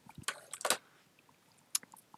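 Handling noise as a handheld multimeter is brought over and set down on the bench: a cluster of light clicks and rattles in the first second, then one more sharp click near the end.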